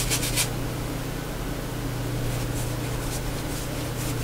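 Wide, flat synthetic-bristle paintbrush scrubbing acrylic paint across a stretched canvas: a quick run of short scratchy strokes at the start, then fainter strokes in the second half. A steady low hum sits underneath.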